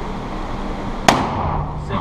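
.50 AE revolver fired once about a second in: a single sharp gunshot with a short echo off the indoor range's walls.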